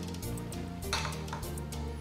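Background music, with a measuring spoon clinking against the rim of a mixing bowl about a second in, then a fainter second clink shortly after.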